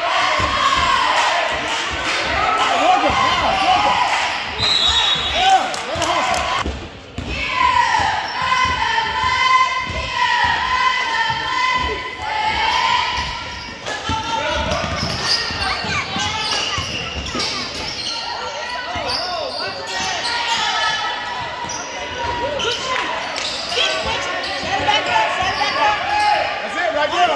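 Basketball being dribbled on a hardwood gym floor during live play, with indistinct voices calling out in the echoing gym.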